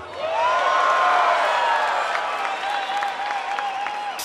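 Large concert crowd applauding and cheering, with high whoops and whistles gliding over dense clapping. It swells within the first half second and holds loud.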